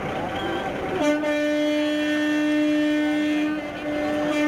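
A single steady, horn-like tone comes in about a second in and is held at one pitch, dipping briefly near the end.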